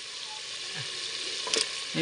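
Potato pieces and masala sizzling steadily in hot oil in a clay handi, the potatoes just added to fry, with a single knock about one and a half seconds in.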